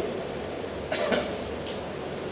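A single short cough about a second in, against quiet room tone.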